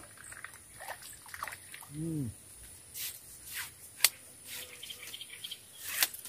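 Water trickling and dripping as a small climbing perch (betok) is lifted out of the swamp on a long fixed-line pole, with scattered rustles and a few sharp clicks, the loudest about four seconds in. A short hum from the angler about two seconds in.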